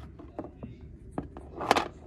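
Light clicks and taps of toy horse figures being handled and knocked against the toy barn, with a short rustle near the end.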